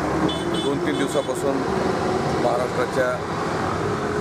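A steady rush of background noise, with indistinct voices of several people talking in the background.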